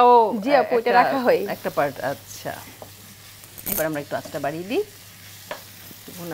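Dried fish and onions frying in oil in a pan, sizzling quietly as a wooden spatula stirs them, with one sharp click a little past halfway. A woman's voice talks over the first two seconds and again briefly later.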